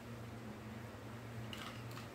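Faint handling of a clear acrylic ruler and fabric on a cutting mat, with a few light scrapes near the end as a rotary cutter is set against the ruler's edge, over a steady low hum.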